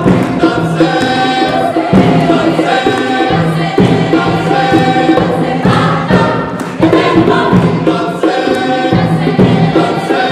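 Mixed choir of women's and men's voices singing a rhythmic piece, accompanied by hand drums struck by a seated percussionist.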